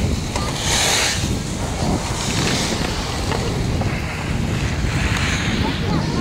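Wind buffeting the microphone on a moving chairlift: a steady low rumble with swells of hiss about a second in and again around two and a half seconds.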